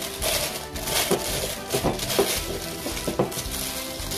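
Thin plastic piping bag crinkling as it is folded down over the rim of a drinking glass, with a few light knocks against the glass, over soft background music.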